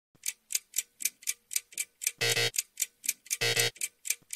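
Ticking-clock sound effect counting down thinking time, light even ticks about four a second, joined from about two seconds in by a louder pitched tock roughly every second.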